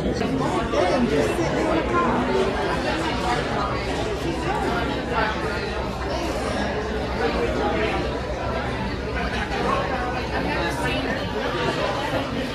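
Steady chatter of many diners talking at once in a crowded restaurant dining room, with overlapping conversations and no single voice standing out.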